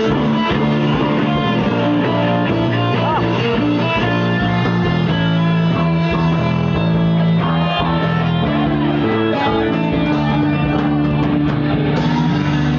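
Rock band playing live through stage speakers, with guitars and bass to the fore in held chords.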